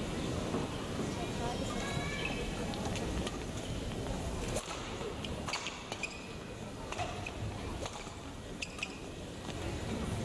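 Steady murmur of indistinct crowd voices in a badminton hall. In the second half there are a few sharp hits from the court.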